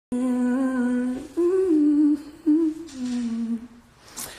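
A young male voice humming a short tune with closed lips, in a few held notes that step up and down in pitch, trailing off near the end.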